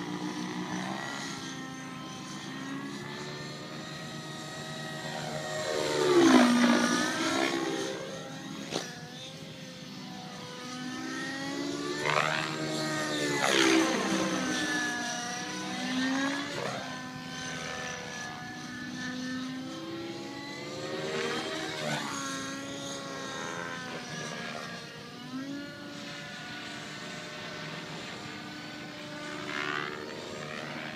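Radio-controlled model airplane flying overhead, its engine and propeller note rising and falling in pitch and loudness as it makes repeated passes, loudest about six seconds in and again around thirteen and twenty-one seconds.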